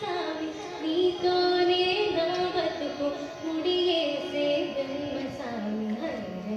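A woman singing a slow melody with music behind her, holding notes and stepping between pitches, dropping to a lower phrase near the end.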